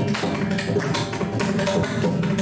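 Mridangam played with the hands in a quick, even run of strokes, about five a second, mixing sharp ringing strokes with deeper ones.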